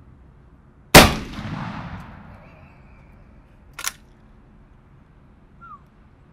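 A single shot from an 1887 Winchester lever-action shotgun loaded with black powder, about a second in, with an echo that fades over about a second. A short sharp click follows nearly three seconds later.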